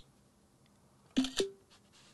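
macOS screenshot shutter sound: a short two-part camera-shutter click about a second in, as a screen capture is taken. A faint tick comes just before, at the start.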